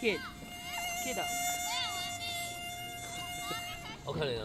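Night insects singing in several steady, unbroken high tones. Short rising-and-falling chirps come over them throughout, and a brief falling call sounds right at the start.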